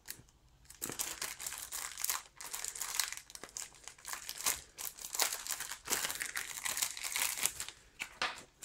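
Thin clear plastic packaging bag crinkling in irregular bursts as it is opened and worked off its contents by hand, starting about a second in.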